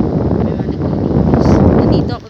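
Wind buffeting the phone's microphone: a loud, gusting low rumble.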